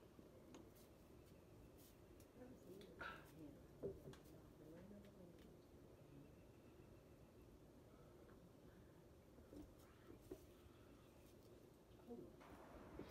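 Near silence: faint background with a few soft clicks and knocks, the loudest about four seconds in.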